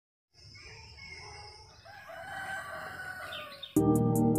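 A rooster crowing, its call rising and falling. Near the end, loud music with a steady beat cuts in suddenly.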